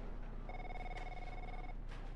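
Office telephone ringing: a single electronic trilling ring, a little over a second long.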